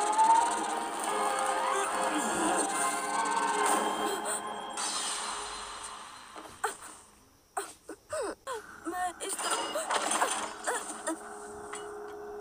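Dramatic anime soundtrack music mixed with energy-blast effects, fading out about six seconds in. In the quieter second half come short scattered vocal sounds.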